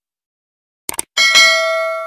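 Subscribe-animation sound effect: a quick double mouse click just before one second in, then a bright notification-bell ding that rings on and slowly fades.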